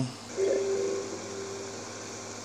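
A single held musical note, with a fainter higher tone above it, starts about half a second in and slowly fades away: a sustained note from the film score being composed.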